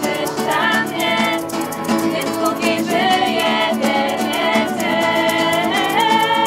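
A small group of mostly female voices singing a Polish worship song together, accompanied by a strummed acoustic guitar in a steady rhythm.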